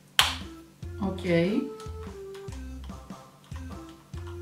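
A single sharp plastic click, a battery or the battery cover snapping into place on a small battery-powered alarm clock, over steady background music.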